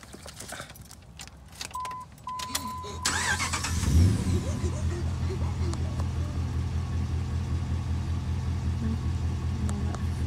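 A 2006 Dodge Ram pickup's engine is cranked and catches about three seconds in, then settles into a steady idle. Two high electronic beeps sound just before it starts.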